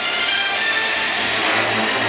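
Show soundtrack music playing over outdoor loudspeakers at a steady level, over a dense, even rush of sound.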